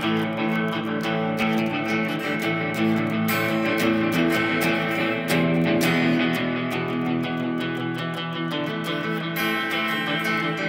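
Electric guitar playing an instrumental intro: repeated picked and strummed chords with notes ringing on between them.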